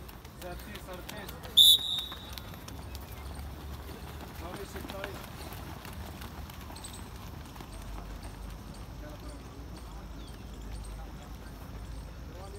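Footfalls of many runners pattering on a synthetic running track, with a short, loud, high-pitched whistle blast about a second and a half in.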